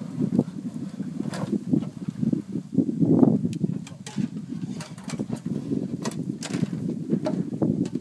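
Brush and branches rustling and cracking as they are pushed aside, with scattered sharp snaps over an uneven low rumble.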